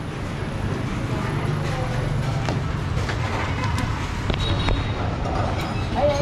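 Steady street traffic noise with a low engine drone, heard through an open shopfront, with a few light clicks.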